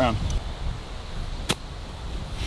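A single sharp click of a golf wedge striking the ball in a short chip shot, about one and a half seconds in.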